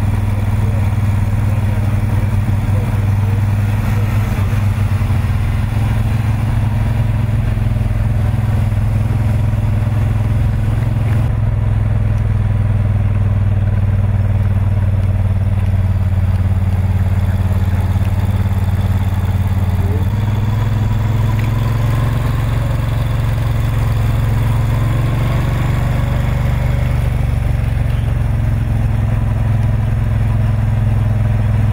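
Engine of a motor vehicle running steadily at a low, even speed while travelling alongside the riders, with road and wind noise. Its pitch steps up slightly about twenty seconds in.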